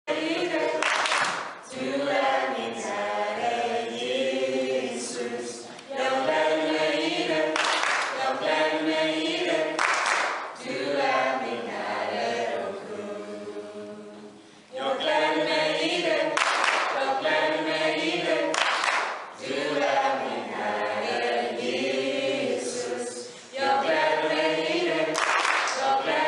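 Small mixed choir of men's and women's voices singing in harmony a cappella, in phrases of a few seconds with short breaks between them.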